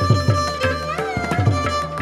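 Carnatic violin playing a melody in raga Shuddha Dhanyasi with sliding ornamented notes, over a steady tambura drone, with regular strokes of Carnatic hand percussion.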